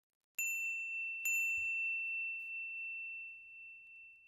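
Two bright, bell-like dings about a second apart, each ringing on and fading slowly: a correct-answer sound effect marking two right answers.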